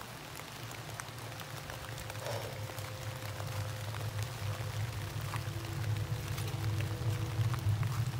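A low droning rumble that swells steadily louder, with faint held tones above it and scattered light ticks of rain.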